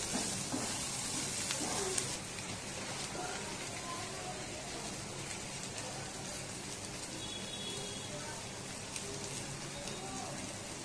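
Chopped green chillies sizzling in oil in a kadhai, a steady frying hiss, with a couple of light knocks from the wooden spatula, about two seconds in and near the end.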